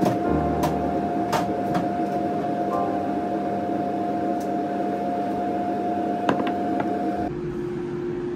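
Steady hum of a running appliance with a held tone, broken by a few light clicks; it cuts off abruptly near the end.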